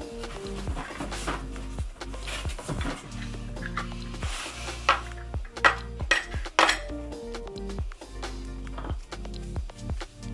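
Background music, with a few sharp clinks about halfway through as metal lids are taken off glass candle jars and set down on the table.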